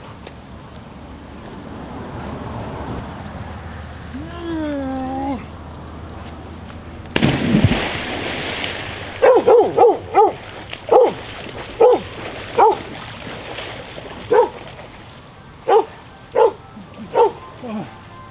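A person plunging into lake water off a rope swing, a sudden loud splash about seven seconds in, followed by a dog barking over and over, about a dozen sharp barks. A brief wavering cry comes a little before the splash.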